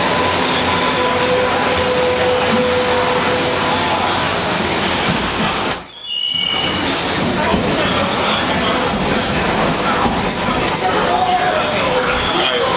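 Berlin U-Bahn train pulling into the station, its wheels and motors running loudly on the rails. Steady high squeals from the wheels come in as it slows, one short and sharp a little past halfway.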